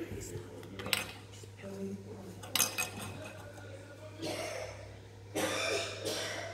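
Indistinct voices and a few sharp clicks over a steady low hum.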